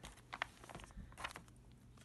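A hardback hymn book being opened and its pages leafed through by hand: faint paper rustling with a few short flicks, the clearest about half a second and just over a second in.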